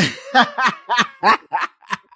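Male laughter in a run of about six short bursts, about three a second, growing weaker near the end.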